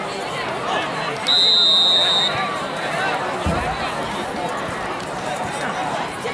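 Sideline crowd chatter, with a single steady referee's whistle blast of about a second, shortly after the start. The whistle is the loudest sound.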